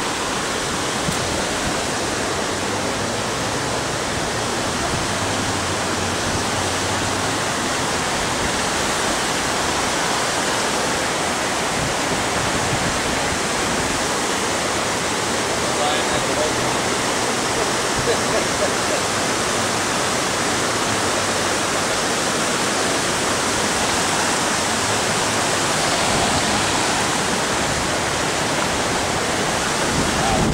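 Rushing floodwater from an overflowing river, a steady, even rush of flowing water.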